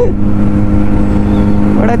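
Kawasaki Z900's inline-four engine cruising at a steady speed of about 75 km/h. It is an even drone with no revving, over a low road rumble.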